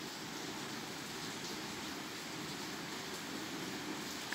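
A steady, even hiss with no distinct sounds.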